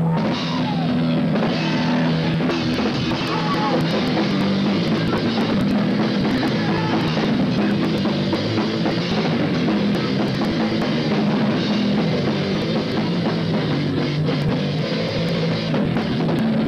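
Live rock band playing loud, driven by a drum kit and an electric guitar.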